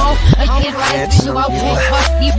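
A hip hop/R&B song played in reverse: garbled backwards vocals over a heavy bass line, with reversed drum hits that swell in and cut off sharply.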